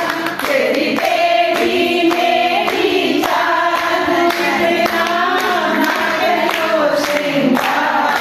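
Several voices singing a folk song together in one melody, with a regular beat of short taps underneath.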